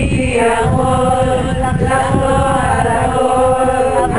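A group of people singing together in unison, holding long, drawn-out notes.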